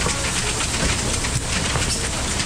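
Steady hiss of rain falling, with faint scattered ticks and knocks through it.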